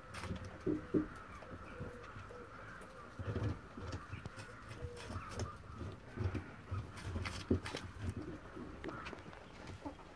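A German giant rabbit chewing and crunching a piece of apple, with many short crisp bites, while birds call in the background.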